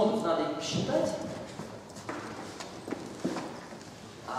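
Indistinct voices murmuring in a lecture hall, with a few sharp knocks in the second half.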